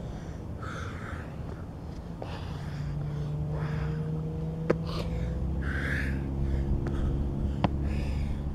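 A man breathing hard during burpees, with a heavy breath about every two seconds, and two sharp knocks of the body landing on the ground. A steady low engine hum runs underneath.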